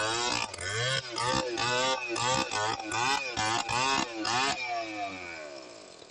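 Stihl chainsaw cutting into a large tree trunk, its engine pitch rising and falling over and over as the chain bites. Near the end the bar comes out of the wood and the engine winds down.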